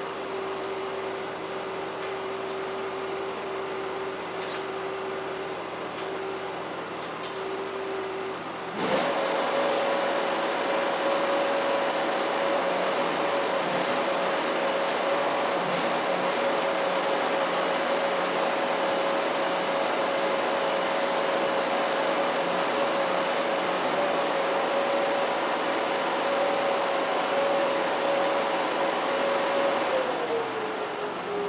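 Arc welding on a steel gate frame: a steady frying crackle of the arc starts suddenly about nine seconds in and runs on evenly. Under it a welding machine's hum steps up in pitch as the arc strikes, then glides back down near the end.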